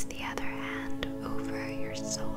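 Close, soft whispering in the ASMR manner over gentle ambient music with long held tones, with a few faint clicks.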